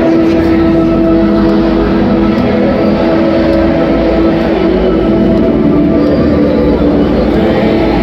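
A song over the ballpark PA with the stadium crowd singing along, in long held notes over a steady crowd din.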